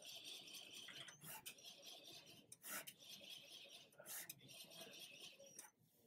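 Faint rubbing and rasping as a hand pulls the table-lift belt of an Epilog laser engraver counterclockwise, with three soft knocks about a second and a half apart. The belt is being turned by hand to lower the table and free the autofocus plunger jammed in the vector grid.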